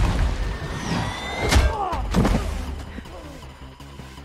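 Sci-fi action sound effects from a TV episode's soundtrack: a loud rushing noise over a deep rumble, a rising whine, and a sharp crack about one and a half seconds in, dying down toward the end.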